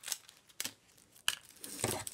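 Scissors cutting open plastic jewelry packaging, with the wrapping being handled: three short crisp snips, then a longer crinkling rustle near the end.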